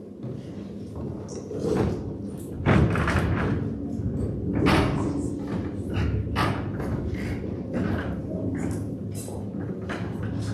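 Handling noise from microphones and papers at a lectern: a string of irregular knocks, thumps and rustles, the loudest about three and five seconds in, over a low steady hum.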